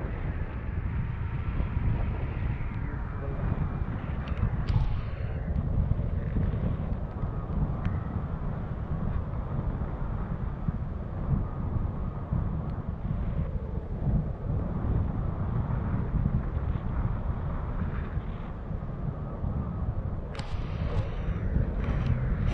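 Wind buffeting the microphone of an action camera on a paraglider in flight: a steady low rushing, with a brief burst of hissy rustling near the end.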